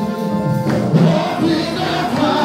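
Gospel music with a choir singing.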